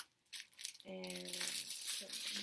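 Clear plastic packaging crinkling and rustling in the hands as packs of socks are handled.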